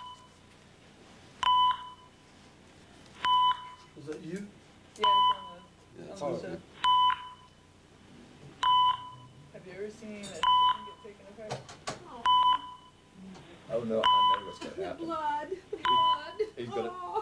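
A short electronic beep repeating steadily about every two seconds, nine times, like a heart monitor's pulse tone.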